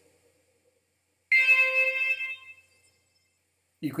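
A single C5 note from Sonic Pi's zawa synth, an electronic tone played through the reverb effect. It starts sharply about a second in and takes about a second and a half to die away.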